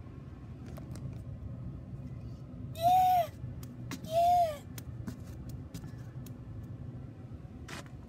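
A high voice makes two short calls about a second apart, each rising and then falling in pitch, over a low steady hum and a few light handling clicks.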